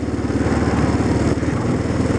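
Motorcycle engine running steadily while riding, a fast even pulsing under road and wind noise.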